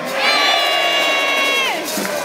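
Large crowd cheering and shouting in answer to a yes-or-no appeal, giving its approval. One long held high note rises above the crowd and drops off near the end.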